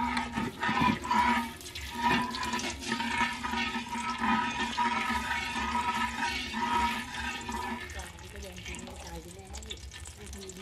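Water running steadily with a steady tone in it, cutting off about eight seconds in.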